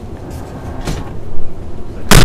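Heavy steel service door being opened and swung, with low rumbling thuds and handling noise, loudest about a second and a half in.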